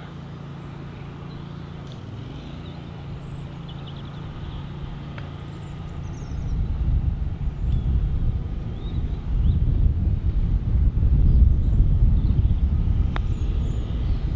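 Wind buffeting the microphone: a low, gusting rumble that builds about six seconds in, over a faint steady hum and faint bird chirps. A single sharp click near the end as the putter strikes the golf ball.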